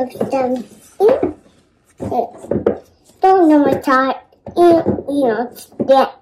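A toddler talking in short, high-pitched phrases of unclear words.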